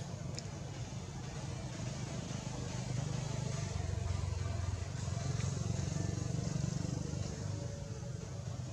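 A low, steady engine-like rumble that grows louder about three seconds in and eases off near the end.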